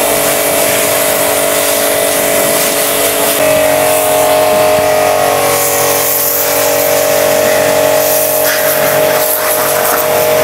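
Portable electric high-pressure car washer running under load, its pump motor whining steadily under the hiss of the water jet striking the car's paint and glass. About three and a half seconds in, the whine steps up slightly in pitch.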